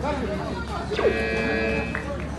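A steady buzzer-like tone sounds for just under a second, starting about a second in, over voices and chatter in the hall.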